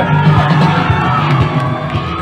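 Live rock band with guitars, bass and drums, the crowd cheering over it as a sung phrase ends.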